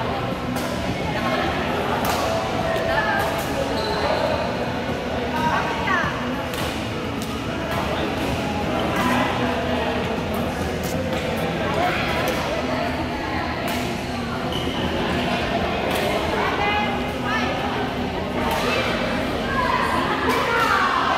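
Badminton hall: irregular sharp hits of rackets on shuttlecocks and thuds, echoing in a large hall, over background chatter of voices.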